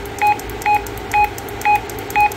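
Retevis RA86 GMRS mobile radio giving short, even key beeps, about two a second, as it is stepped through its channels to a low-power channel.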